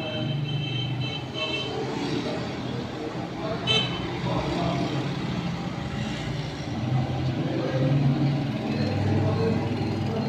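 Road traffic running steadily, with vehicle horns tooting briefly in the first second or two and once more about four seconds in.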